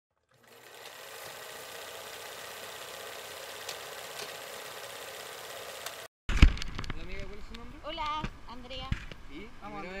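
A steady hissing rush that cuts off abruptly about six seconds in. It is followed by a sharp loud knock, low wind rumble and people talking in Spanish.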